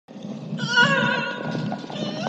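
A high, wavering cry that starts about half a second in and weakens over the next second, over a low rumble.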